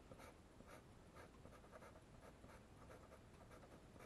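Faint scratching of a pastel pencil on paper in short, quick strokes, about two to three a second.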